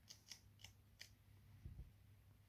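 Faint paper flicks as the pages of a small paperback booklet are thumbed through: four quick crisp ticks in the first second. A soft low thump follows near the end.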